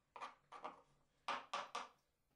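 Kitchen knife chopping garlic on a bamboo cutting board: a faint series of quick, sharp taps, with a tighter run of strokes in the second half.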